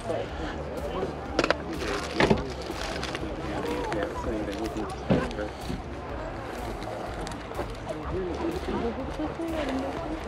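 Background voices talking at an outdoor sale, with a steady low rumble and a few sharp knocks or clicks in the first half.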